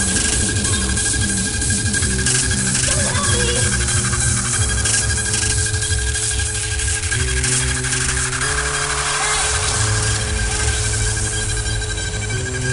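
Hardcore techno (gabber) from a live DJ set, recorded live. It is in a breakdown: sustained bass and synth notes shift in pitch every second or so under a steady high tone, without the heavy kick drum pattern.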